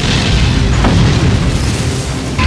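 A loud explosion boom with a low rumble, mixed over heavy rock music.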